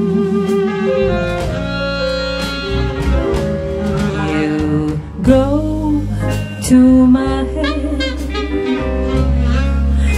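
Live jazz combo (keyboard, bass, drums, guitar and alto saxophone) playing a slow ballad; a sung note held with vibrato fades in the first second, then the band plays an instrumental fill between vocal lines.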